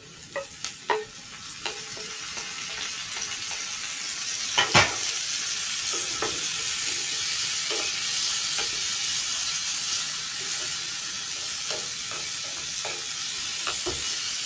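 Chopped tomatoes sizzling as they go into a hot oiled frying pan, the sizzle building over the first few seconds and then holding steady. A wooden spatula stirs them, tapping and scraping the pan now and then, with one louder knock about five seconds in.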